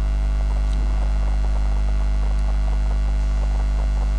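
Steady, low electrical mains hum with its overtones, on an otherwise idle microphone.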